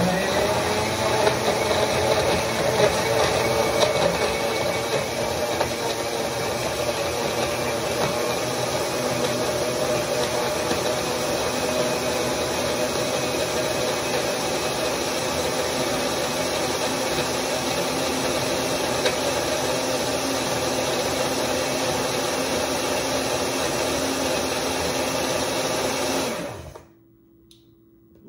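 Countertop blender running at full speed, blending frozen pineapple chunks, bananas and almond milk into a smoothie. It is louder and less even for the first few seconds, then runs steadily and cuts off suddenly near the end.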